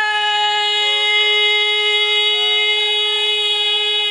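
Devotional kirtan music: one long note held at a steady pitch, with a few quieter notes changing beneath it. The held note ends just after four seconds.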